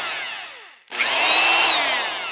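Cordless power drill running in two bursts. The first whine winds down near a second in; the second starts right after, its pitch rising and then falling.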